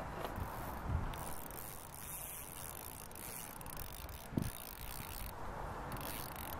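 Spinning reel being cranked to retrieve line, its gears running steadily, with a short low thump a little after four seconds in.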